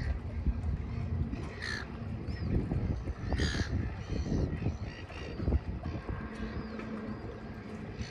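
A bird calling three times, short rough calls about a second and a half apart in the first half, with a couple of faint thin chirps later, over a low steady rumble of wind on the microphone.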